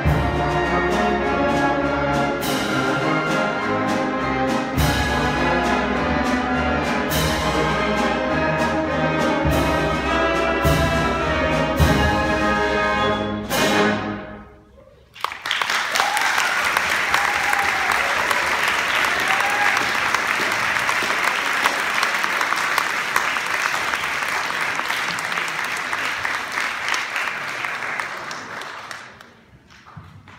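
Wind ensemble of woodwinds and brass playing the closing bars of a piece with regular low strokes, ending about fourteen seconds in. After a brief gap, the audience applauds for about fourteen seconds, fading out near the end.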